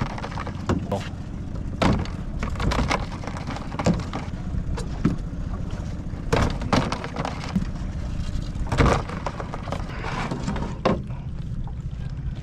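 Small outboard motor running slowly with a steady low hum, under a string of sharp knocks and clatters as a crab dip net and crabs strike the aluminium boat while crabs are netted off a trotline.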